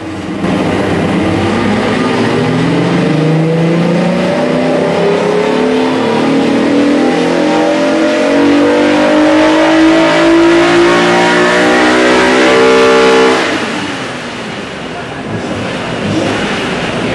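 Acura NSX NA2's stock V6, with an aftermarket intake and stock exhaust, making a full-throttle pull on a hub dyno. Its pitch climbs steadily through the revs for about thirteen seconds, then the throttle is lifted and the engine drops away.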